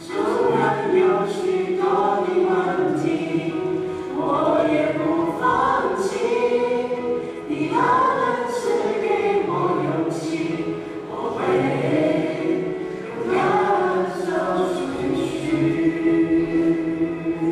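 A choir singing a Christian song with sustained, swelling phrases a few seconds long.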